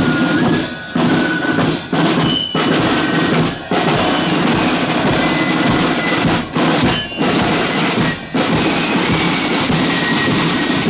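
Marching band playing a march: snare and bass drums with rolls, with the high notes of a glockenspiel-style bell lyre over them.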